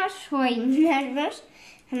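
Speech only: a high-pitched voice talking for about the first second and a half, then a short lull.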